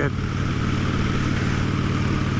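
Motorcycle engine running at a steady cruise, with a steady rushing noise over it.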